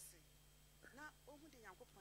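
Faint speech from a voice well below the sermon's usual loudness, over a steady low hum.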